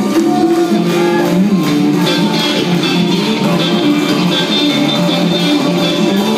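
A rock band playing live, with guitars over drums, heard from the crowd with little bass.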